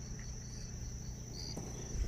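Insects chirping in dense vegetation: a steady high-pitched trill with short, repeated chirps just below it, over a faint low hum.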